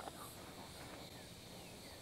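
Quiet outdoor ambience with faint, steady high insect chirring, and one small click right at the start.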